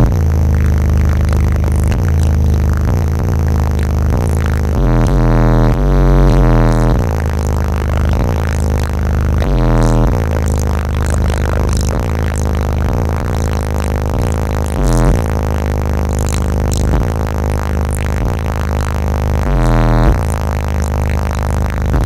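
Bass-heavy music played loud through a car audio system, its HDS215 subwoofer driven by 850 watts, heard inside the truck's cabin. The low bass notes change every second or so.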